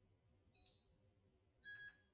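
Two faint, short electronic blips from an animation's sound design, one about half a second in and one near the end, over a faint low hum.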